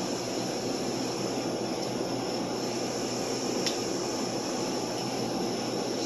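Steady mechanical hum of room ventilation and cooling equipment, with one faint click about two-thirds of the way through.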